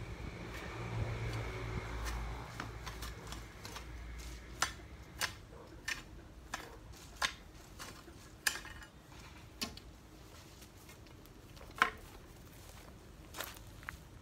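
A long-handled garden tool striking the soil, a run of sharp separate knocks about every half second to a second from about four seconds in, then more spaced out. A low rumble fades out over the first few seconds.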